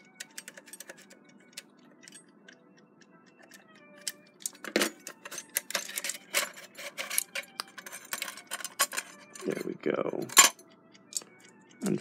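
Irregular metallic clicks and clinks of a Westclox Big Ben alarm clock's metal case and movement being handled and worked loose. They grow denser and louder about four seconds in. Faint background music plays throughout.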